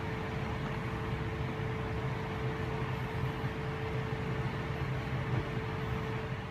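Steady mechanical hum of kitchen equipment by a stovetop: a low drone with a thin steady whine above it, unchanging throughout.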